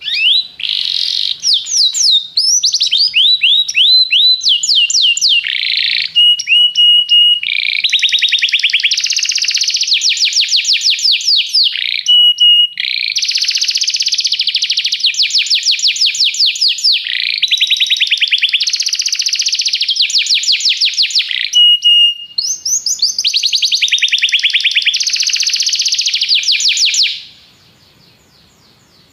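Domestic canary singing a long, loud song made of rapid trilled phrases, broken three times by short steady whistled notes; the song stops about a second before the end.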